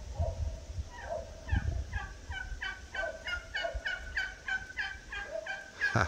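Red-breasted toucan (Ramphastos dicolorus) calling: a long, rapid series of short, hoarse 'rrät' notes, about four to five a second, starting about a second in and stopping just before the end.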